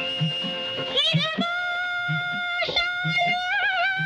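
Marathi film song: a hand drum keeps a steady beat under held instrumental notes. About a second in, a high female voice enters on one long, ornamented held note.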